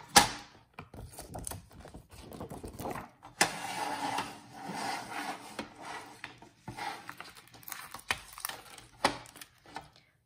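A clear plastic laminating pouch being slid around and handled on a plastic sliding paper trimmer: crinkling, rubbing rustles with scattered clicks and knocks. The sharpest click comes right at the start, and the rustling is densest in the middle.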